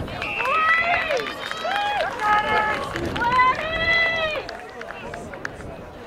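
High-pitched voices shouting, several long, drawn-out yells during the first four and a half seconds, then a quieter stretch of outdoor noise with faint knocks.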